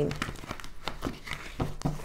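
Tarot cards being handled and laid on a table: a run of light, irregular papery clicks and rustles.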